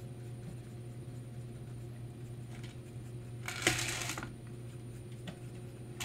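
Quiet room with a steady low hum, and a brief rustling scrape about three and a half seconds in: a painted board being turned on a woven mat.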